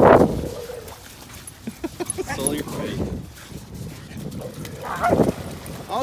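A dog barking during rough play: one loud bark right at the start, fainter short calls about two seconds in, and another bark about five seconds in.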